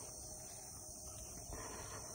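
Faint, steady high-pitched insect chorus with a low rumble underneath.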